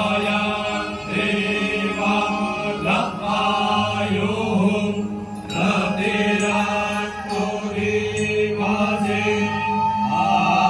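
A group of Brahmin priests chanting Vedic Sanskrit mantras together over microphones, with a steady low drone held underneath that drops out briefly a few times.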